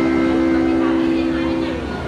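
Railway-station public-address chime: its notes, which came in one after another rising in pitch, ring on together as a held chord and die away near the end. It is the signal that a station announcement is about to follow.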